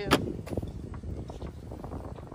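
A sharp click just after the start, then a low rumble of wind on the phone's microphone.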